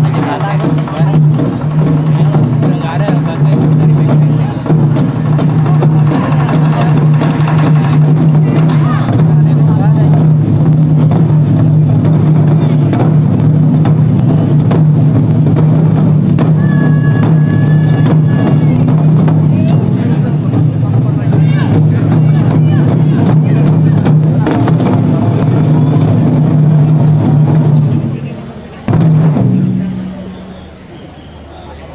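Taiko drum ensemble playing loud, dense, continuous drumming on large barrel drums. The drumming stops near the end, with one last burst just after.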